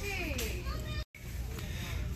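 High-pitched background voices in a store over a steady low hum, fading out in the first second. The sound cuts out completely for a moment about a second in, then only the hum remains.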